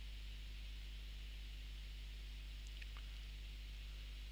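Steady low electrical hum and faint hiss of the recording's background (room tone), with one faint tick a little under three seconds in.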